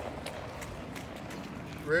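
Faint, irregular footsteps of sandals on concrete pavement over steady background noise, ending with a voice asking "Ready?".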